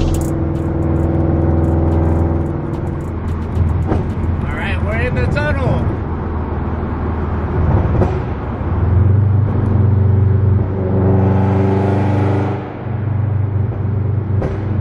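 Scion FR-S's 2.0-litre flat-four running through a Tomei titanium exhaust at cruise, heard from inside the cabin as a steady low drone. About eleven seconds in it revs up and gets louder, then drops off sharply a moment before the end.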